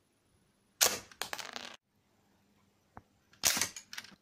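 A LEGO brick-shooting gun firing twice: a sharp snap about a second in, followed by a quick rattle of small plastic clicks, then a single click and a second snap near the end.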